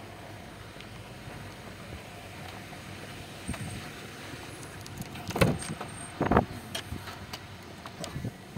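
Steady outdoor background noise with camera handling, then two loud thuds about a second apart: a car door being opened and pulled shut.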